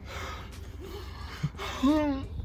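A man gasping and breathing hard through his mouth, then a short pitched whimper near the end: a pained reaction to the burn of an extremely hot chili chip in his throat.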